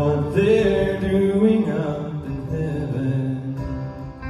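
A man's voice holding a long sung note over acoustic guitar, strongest for about the first two seconds and then softening, with the guitar ringing under it.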